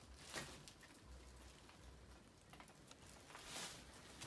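Near silence, broken by a few faint footsteps on leaf litter and debris.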